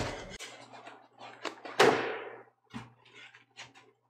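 Battle sound effects from a film siege scene: a few scattered knocks, the loudest a sudden heavy impact about two seconds in that fades out over half a second.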